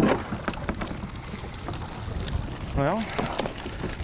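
Water pouring and dripping off a hoop net as it is hauled out of a river over a boat's side, with scattered short clicks and knocks from the net.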